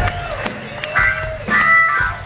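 Live concert hall: a few electric guitar notes sound on stage about a second in and again near the end, with scattered claps and shouts from the crowd as its cheering dies down.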